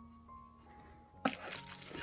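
Soft background music, then a bit over a second in a short crunching, scraping noise as the ring mould is lifted off the glass panel and moved aside.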